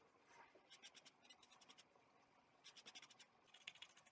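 Faint, rapid scratching of a paintbrush stroking across the painting, in short runs about a second in and again near three seconds.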